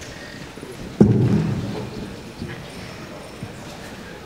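A single sudden thump on a handheld microphone about a second in, as it is moved and handled, then a low muffled rumble that fades over about a second. Behind it is the quiet background noise of a theatre hall.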